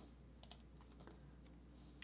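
Near silence with two faint, quick clicks close together about half a second in, from working a computer while the image background is switched to yellow.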